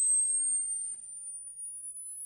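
Pure sine test tone played over the hall's loudspeakers, very high-pitched and gliding slowly upward. It is a hearing-range frequency sweep nearing the upper limit of human hearing, where older listeners stop hearing it.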